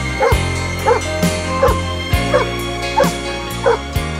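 A dog barking over and over in short barks, about two a second, with a song playing underneath.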